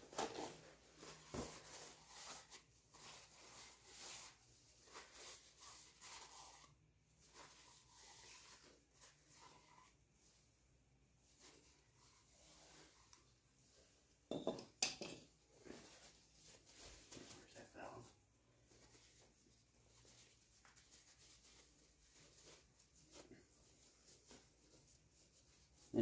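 Faint handling sounds: a paper shop towel rubbing and crinkling and small metal engine parts clinking as an ATV cylinder head and valve are wiped clean, with a sharper clink about fifteen seconds in.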